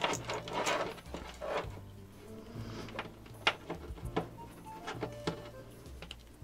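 Clicks and light clatter of test leads, clips and plugs being handled and connected between a bench power supply and a multimeter: a string of separate sharp clicks over several seconds.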